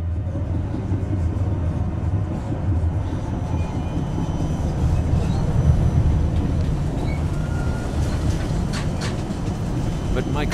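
Steady low rumble of a tram in motion, heard from inside the car, with a few sharp clicks near the end.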